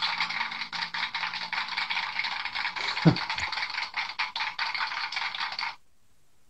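Recorded applause sound effect: a crowd clapping steadily, then cutting off suddenly near the end.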